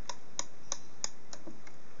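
Six crisp clicks, about three a second, as toggle switches on a fog rod contact simulator box are flicked on one after another. They mimic every contact on the rod going wet at nearly the same moment.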